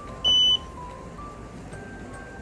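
A single short, high electronic beep from a gel nail curing lamp, the loudest sound here, over soft background music.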